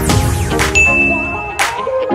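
Subscribe-button animation sound effects over background music: a click, then a bright ding held for under a second, then another sharp click.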